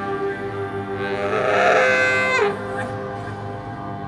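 Ambient music over a steady low drone; about a second in, a baritone saxophone note swells and then bends sharply down in pitch, breaking off about two and a half seconds in.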